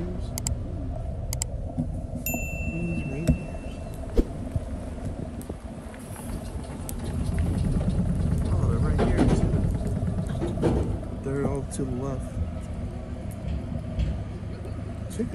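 Car moving slowly, heard from inside the cabin as a steady low rumble, with a short electronic ping about two seconds in.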